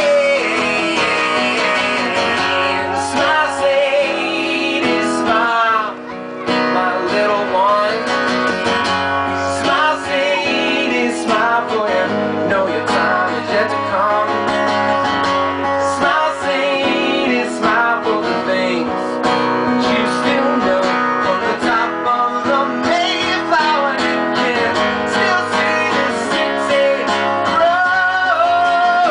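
A live acoustic band playing a song: steady acoustic guitar strumming over a drum kit, with a male voice singing long, wavering notes.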